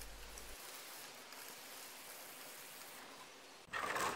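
Stiff nylon-bristled brush scrubbing degreaser-soaked bicycle chainring teeth as the cranks are turned: a faint, steady scratchy rustle. A louder, short rustle comes near the end.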